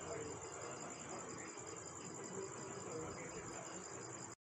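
Faint background noise with a steady, high-pitched pulsing trill running underneath.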